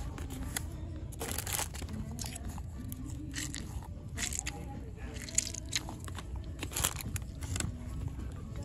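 Crinkling and crunching of plastic-packaged squishy fidget toys being picked up and handled, in irregular bursts with a couple of sharper clicks.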